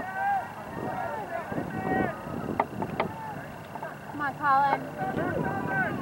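Players' and spectators' voices calling and shouting across an open lacrosse field, at a distance, with a couple of sharp clacks about halfway through.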